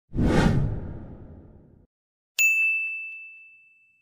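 Editing sound effects: a whoosh that fades away over about two seconds, then a bright notification-style ding with a few quick clicks, ringing out over about a second and a half.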